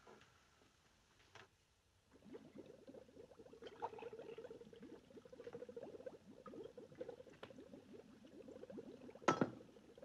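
Liquid bubbling and pouring in laboratory glassware: a dense, steady patter of small pops that starts about two seconds in and runs on until a short sharp sound near the end. Before it comes a quiet stretch with a single faint click.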